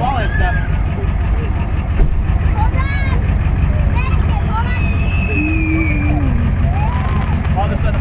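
Pickup truck engine running steadily at low revs close by, under shouts and chatter of people around it.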